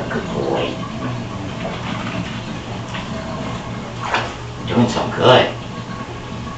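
Bathtub water draining with a steady low rumble, broken by a few short, indistinct voice sounds, the loudest about five seconds in.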